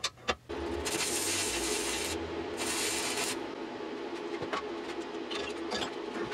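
A few light metal clicks as steel parts are handled in a bench vise, then a steady machine hum starts, with two passes of rasping noise over it in the first few seconds.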